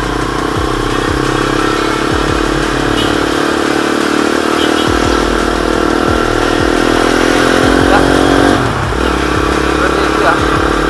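Honda C70 motorcycle with a modified 120cc racing engine running under way, its note rising slowly as it pulls, then dropping sharply about eight and a half seconds in before settling again.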